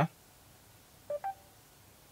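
Mercedes-Benz MBUX infotainment system giving a short two-note electronic chime through the car's speakers, the second note slightly higher, about a second after a spoken voice command; otherwise a quiet car cabin.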